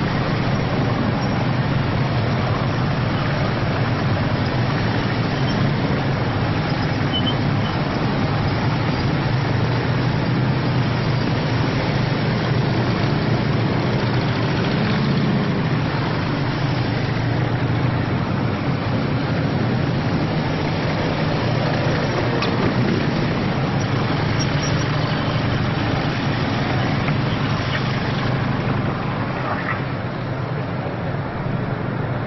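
Police motorcycles and procession vehicles passing slowly, a steady low engine rumble.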